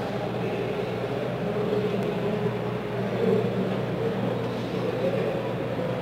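Steady low hum with general room noise and faint, indistinct voices in the background.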